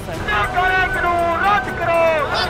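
Loud, high-pitched shouting voices over a dense low rumble of traffic and crowd noise.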